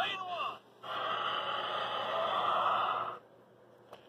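Tinny electronic sound effects from a toy race track's finish gate: a quick burst of sweeping tones, then about two seconds of a steady hissing rush that cuts off sharply around three seconds in. A faint click follows near the end.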